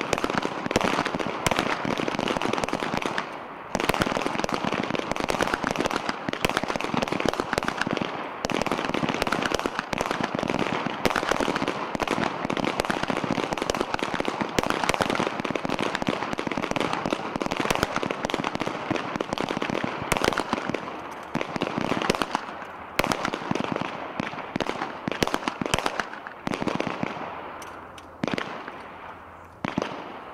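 Many pistols firing at once along a firing line: a dense stream of overlapping gunshots that thins to scattered single shots over the last few seconds as shooters finish their timed string.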